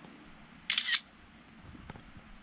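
Smartphone camera shutter sound: one short, high-pitched click about three quarters of a second in as a photo is taken.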